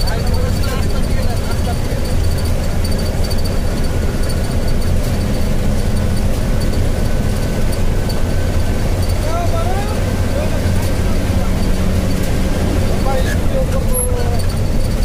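Steady rumble of a vehicle driving at speed on a highway, engine, tyre and wind noise running evenly without a break.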